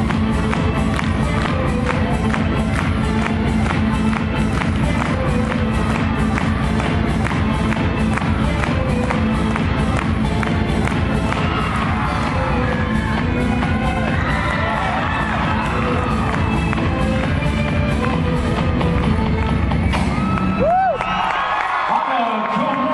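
Floor exercise music with a steady beat played over the arena speakers, with the crowd cheering and whooping over it from about halfway through. The music cuts off suddenly near the end, leaving the crowd cheering and a loud whoop.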